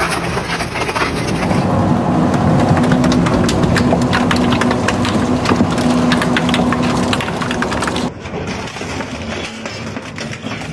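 Twin-shaft shredder's toothed cutters crushing a metal tank, then a plastic jerry can, then a perforated sheet-metal panel: many sharp cracks and crunches over a steady machine hum. The sound changes abruptly about a second and a half in and again about eight seconds in.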